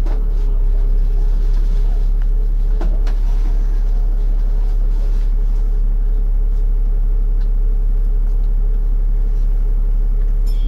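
A single-deck bus's diesel engine running with a steady deep drone and hum, heard from inside the passenger saloon. A single sharp click comes about three seconds in.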